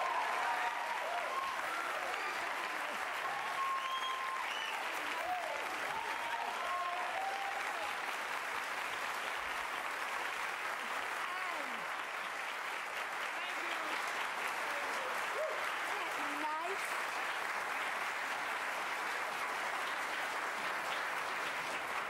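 Studio audience applauding steadily and at length, with voices whooping and cheering over the clapping in the first several seconds.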